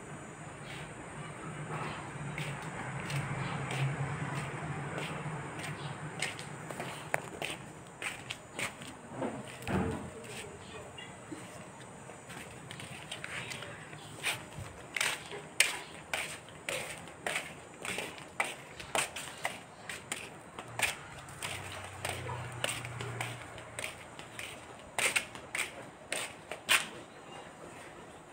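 Footsteps on pavement together with knocks and rubs from a handheld phone being moved around: a string of light, irregular taps that grows busier in the second half.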